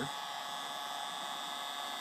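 Hot-air rework nozzle blowing steadily onto a BGA chip to melt its solder for removal: an even hiss with a faint thin high whine.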